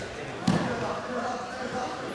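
A single sharp thump about half a second in from two freestyle wrestlers grappling on the mat, with faint voices talking in the background.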